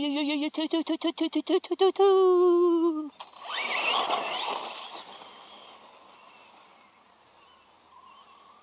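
A man's drawn-out, warbling "yes" shout, wavering and stuttering, then held for about three seconds before it breaks off. A rush of noise follows and fades away over the next few seconds.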